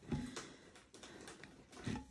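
Faint, scattered light clicks and taps of metal tweezers picking up and pressing diamond painting drills onto the adhesive canvas wrapped around a tin.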